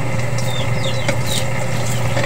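Hot dogs frying in a wok on a portable butane stove, a steady sizzle over a continuous low hum, with a few short high falling chirps.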